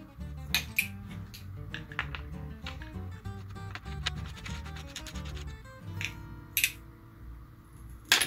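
Background music with a steady low beat, over scattered light metallic clicks and taps as steel legs are handled and screwed into the threaded holes of a small telescope mount's column.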